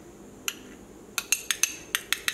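Stainless steel measuring spoons on a ring clinking against each other as they are handled. There is one clink about half a second in, then a quick run of sharp, ringing metallic clinks in the second half.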